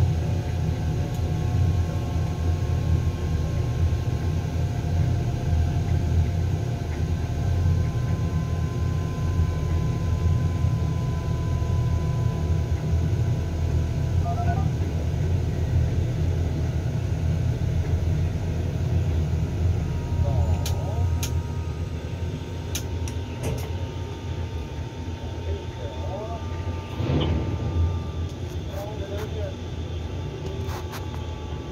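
Steady low rumble of tower crane machinery heard inside the operator's cab while a load is lowered, with faint whining tones that slide slowly in pitch. A few sharp clicks come in the second half.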